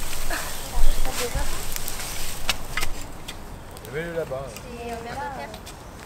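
Garden rakes and forks dragging dry straw mulch off a bed: rustling and scraping with sharp clicks. Children's voices come in about four seconds in.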